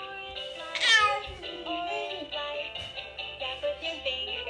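Baby's electronic musical activity toy playing a simple synthesized tune with a sung melody line, with one short, loud, falling vocal-like sound about a second in.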